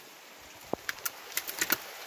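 Gravel and small stones clicking and scraping as a hand tool digs into a creek bank, a quick string of sharp clicks starting about half a second in, with one brief rising squeak among them.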